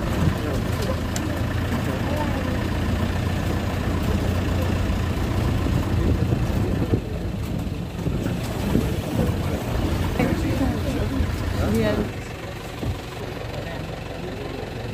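Safari vehicle's engine running as it drives, a steady low rumble that grows quieter about twelve seconds in.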